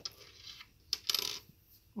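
Small metal charms clinking together as they are handled: a few light metallic clicks and a short jingle about a second in.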